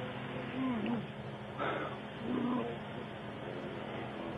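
Two short, wordless groans from a man, the first falling in pitch, with a brief noisy burst between them, over a steady low hum, recorded on low-fidelity dashcam audio.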